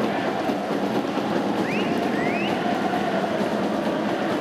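Steady crowd noise from spectators at a football stadium, with two short rising calls from the crowd around the middle.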